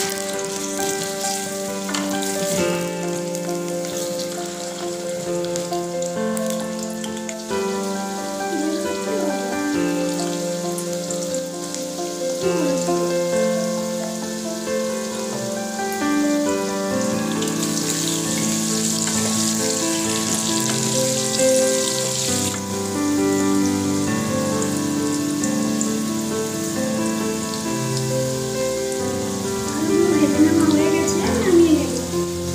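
Potato chunks frying in hot oil in a stainless steel pan, a steady sizzling hiss that grows louder for a few seconds past the middle. Instrumental background music plays over it throughout.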